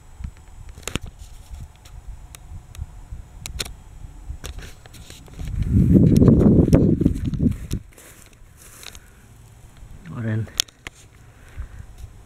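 Wind buffeting the camera microphone, a steady low rumble with a few sharp clicks, swelling into a loud gust about halfway through that lasts about two seconds. A short low voice sound near the end.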